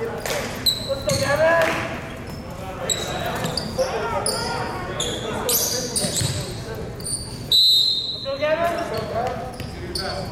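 Players' voices calling out in a reverberant gymnasium, with short sneaker squeaks on the hardwood court and a ball bouncing on the floor. The loudest moment is a brief shrill tone about three-quarters of the way through.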